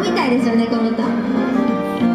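A woman singing a pop ballad into a microphone over guitar accompaniment, amplified through a small street PA; a sung phrase glides downward just after the start while the accompaniment carries on.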